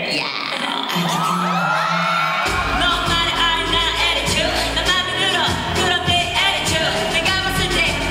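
A woman singing live into a handheld microphone over a pop track. The bass and beat drop out for the first couple of seconds, then the heavy low beat comes back in under the vocal.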